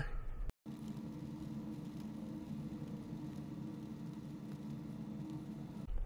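Faint steady low hum, broken by a brief dead-silent gap about half a second in.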